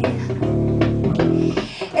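Live guitar playing a short instrumental fill of plucked low notes in the pause between sung lines, with a brief drop in loudness near the end.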